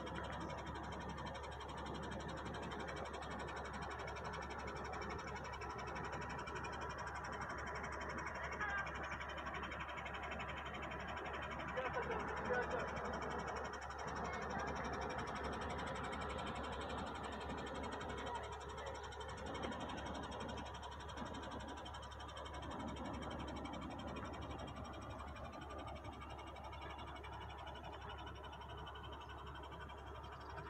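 Indistinct talking in the background, with no words clear, over a steady hiss.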